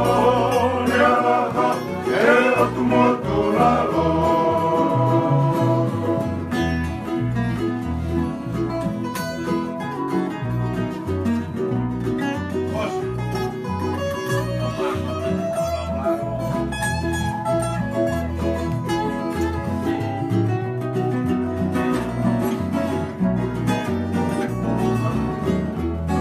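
Tongan kava-club (kalapu) string band: acoustic guitar, ukuleles and electric bass playing a song together over a steady bass line, with men singing in the first few seconds before it turns mostly instrumental.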